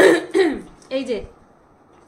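A woman speaking a few short words, with a throat-clearing sound right at the start.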